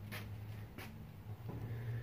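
Faint handling noises: three soft brushes and taps about two-thirds of a second apart as a shop towel and flashlight are moved about an engine bay, over a low steady hum.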